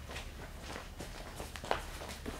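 Footsteps of several people walking across a stage floor: faint, scattered steps.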